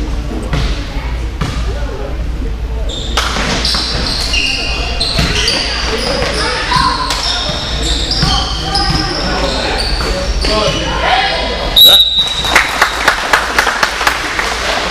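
A basketball bouncing on a gym floor, with sneakers squeaking as players move, in a large echoing gym. Near the end the ball is dribbled fast, about three bounces a second.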